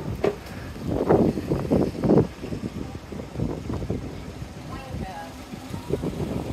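Indistinct voices in the distance over steady outdoor street noise, louder for a second or so near the start.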